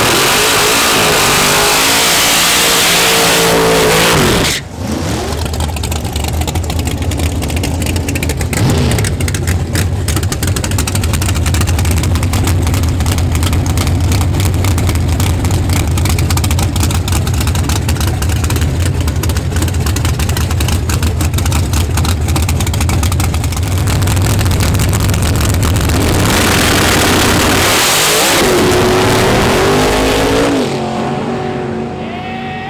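Supercharged V8 of a first-generation Camaro drag car revving high for about four seconds, cutting out sharply, then settling into a loud, choppy idle for most of the time, before revving up again near the end.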